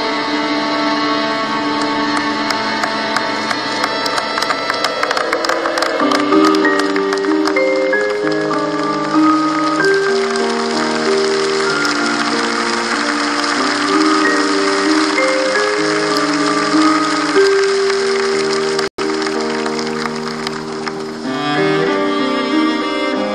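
Instrumental music: a slow melody of held notes over sustained lower notes. It cuts out for an instant late on.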